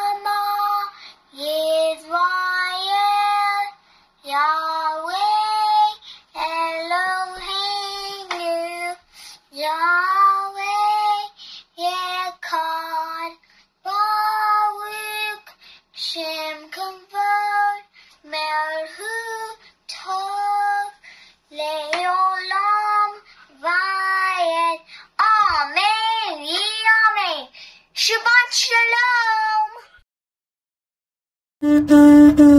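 A child singing solo and unaccompanied, in short held phrases with brief pauses between them, with a wavering long note near the end.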